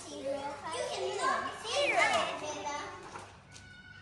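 Young children's voices talking and calling out, one voice swooping sharply up and down in pitch about halfway through, then dropping to quieter room sound in the last second.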